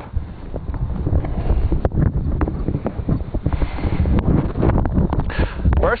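Wind buffeting the camera's microphone, with irregular bumps and clicks of the camera being handled as it is picked up and carried.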